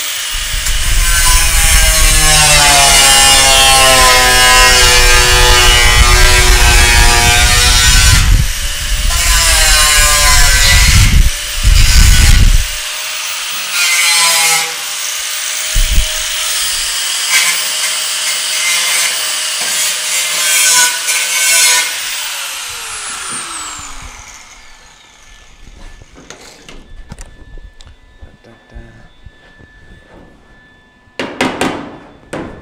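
Angle grinder with a cut-off wheel cutting sheet metal on a car's roof pillar, its motor whine dipping briefly a few times as the disc bites and lifts. About 22 seconds in it is switched off and winds down with a falling whine, followed by a few light taps.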